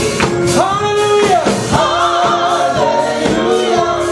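Gospel praise singers singing in harmony into microphones, holding long wavering notes over a keyboard accompaniment with a steady beat.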